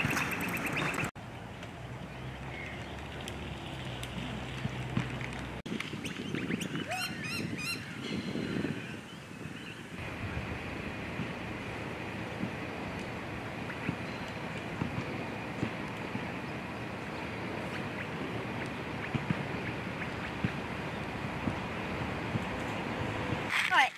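Bicycle ridden over a dirt track, its tyres rolling on the gravelly surface. About seven seconds in, a bird calls in a quick run of short high notes.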